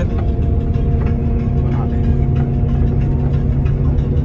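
Steady low rumble of a moving bus heard from inside the cabin, with music playing over it.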